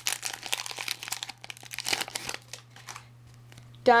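A trading-card pack's wrapper crinkling and tearing as it is ripped open by hand, a dense crackle for about the first two seconds, then fainter handling of the cards.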